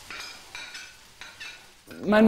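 A pot of tomato sauce simmering, with a low sizzle and a few short, sharp pops from the bubbling surface.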